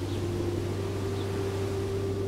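A steady low hum with one higher held tone and a faint hiss, unchanging throughout.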